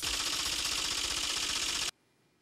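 A rapid, steady rattling sound effect that accompanies an on-screen caption and cuts off abruptly near the end.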